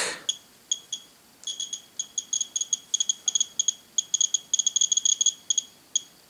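R-tracker GR-14m twin-tube Geiger counter's clicker giving short, high-pitched clicks as it picks up radiation from slightly radioactive uranium-glazed pottery: a few scattered clicks at first, then coming faster and in dense runs. The clicking cuts out about five and a half seconds in; the clicker stops once the reading reaches a certain level, which the owner can't say is a bug or an intended feature.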